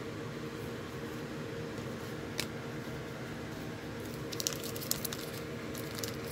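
Steady faint room hum, with a single sharp tick about two and a half seconds in. Near the end comes a quick cluster of light crinkles and clicks from a foil trading-card pack wrapper being handled.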